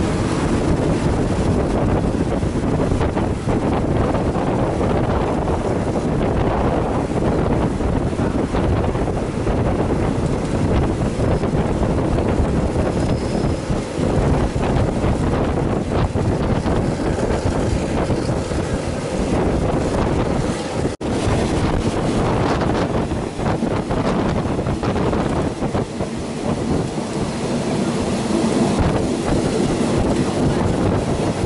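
Passenger train running at speed, heard from an open carriage window: a steady rumble of wheels on the rails mixed with wind buffeting the microphone. The sound drops out for an instant about two-thirds of the way through.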